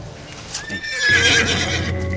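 A horse whinnying once, about half a second in: a single high, wavering call lasting about a second.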